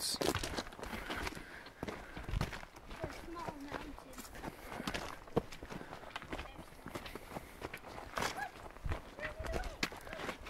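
Footsteps on a dry dirt-and-gravel hiking trail, irregular, with occasional sharper taps; the sharpest comes about halfway through.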